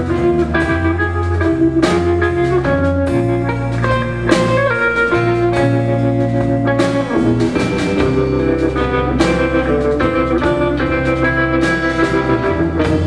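Live band playing an instrumental passage: guitars picking out notes over held electric bass notes and a drum kit keeping time.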